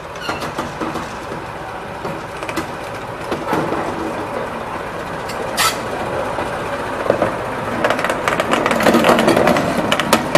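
British Rail Class 14 diesel-hydraulic shunter running past, its engine growing louder as it draws near over the last few seconds, with scattered clicks and knocks.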